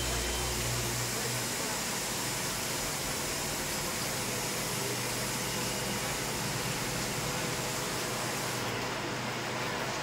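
Steady hiss of an aquarium's aeration and filtration running, air bubbling through the tank, with a low hum that eases after about a second and a half.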